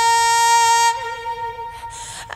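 Female singer holding one long, steady high note for about a second. She then drops to a softer note with a slight vibrato that fades away near the end.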